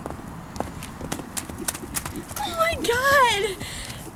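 Hoofbeats of a horse cantering on dirt: a run of dull knocks over the first two seconds. A person's voice then speaks briefly, about two-thirds of the way through.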